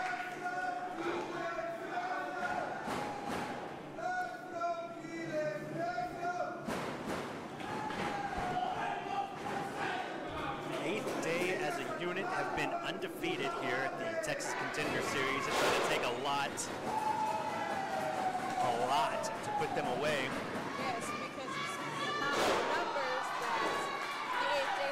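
Pro wrestlers slamming onto the ring canvas and landing strikes, several heavy thuds, over voices shouting in a large hall.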